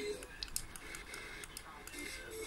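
The FM broadcast from a TEF6686 radio receiver cuts out just after the start as the tuner is stepped down in frequency. What is left is a low hiss with a string of small, irregular clicks while it steps through the band.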